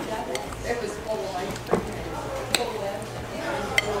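Metal spoons clinking against glass sundae bowls and dishes, several short sharp clinks, the loudest about two and a half seconds in, over a murmur of voices.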